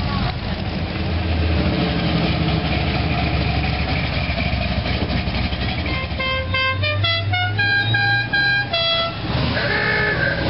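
Classic cars' engines running as they drive slowly past, with a steady low rumble. About six seconds in, a car horn sounds a quick run of short notes at changing pitches, like a musical horn tune, lasting about three seconds.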